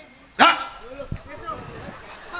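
A person's short, loud shouted call about half a second in, fading into a murmur of voices and hall noise.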